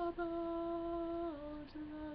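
A man singing unaccompanied, holding one long steady note with a brief break just after the start, then stepping down to a slightly lower note a little over a second in.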